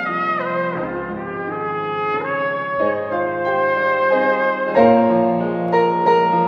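Trumpet playing a slow melody in long held notes; near the end, piano chords take over.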